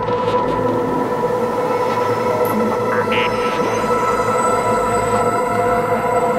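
Intro of a dark psytrance track: a sustained, noisy metallic drone with steady high tones laid over it and no beat yet, a texture close to a train's rumble and screech.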